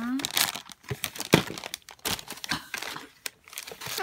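Plastic packaging bags and tissue paper crinkling as toy pieces are handled and unwrapped, in irregular crackles with one sharp, louder crackle about a second and a half in.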